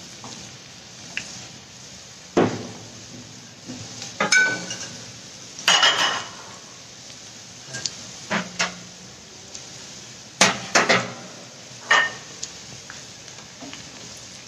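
Spinach-and-paneer rolls deep-frying in hot oil in a wok, a steady sizzle, nearly done. A perforated metal skimmer clinks and knocks against the pan every second or two, some strikes ringing briefly.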